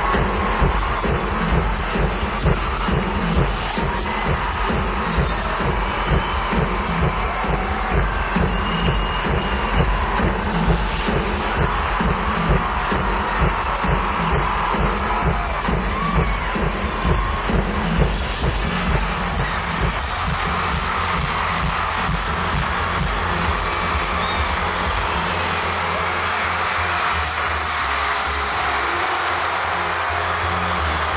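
Loud amplified electronic dance-pop played live in a concert hall, recorded from within the crowd, with a steady bass beat and crowd cheering over it. The beat drops out in the last few seconds while the music carries on.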